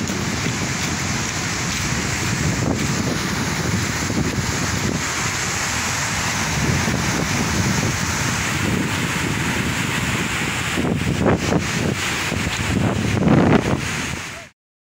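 Muddy floodwater rushing out in a steady torrent from a water burst at a hydroelectric power station, with wind buffeting the phone's microphone; a little louder and more uneven near the end.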